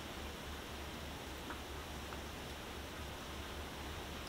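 Faint steady hiss of room tone with a low hum underneath, and two barely audible ticks in the middle.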